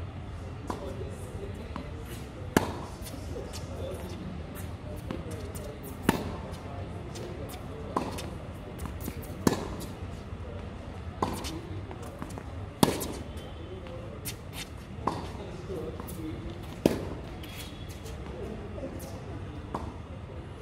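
Tennis rally on a hard court: the ball is struck by rackets and bounces on the court, making a string of sharp pops about every one and a half to two seconds, with the loudest hits coming from the near end.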